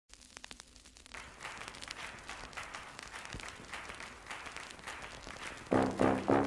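A quiet, dense crackle of many small clicks, a few scattered ones in the first second and then a steady patter. Brass music comes in just before the end.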